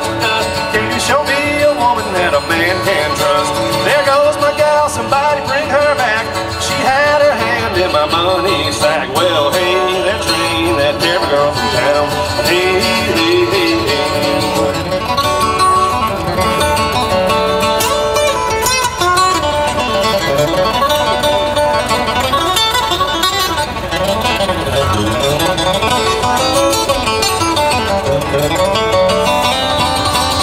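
Solo steel-string acoustic guitar flatpicked in a bluegrass instrumental break, a continuous run of picked notes without singing.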